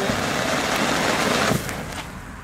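Ground firework burning on the pavement, spraying white sparks with a steady rushing hiss that drops away about one and a half seconds in.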